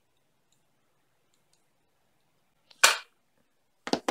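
Near silence, then one sharp, loud clack just before three seconds in and two quicker knocks near the end, as makeup items such as a brush and a plastic compact are handled and set down.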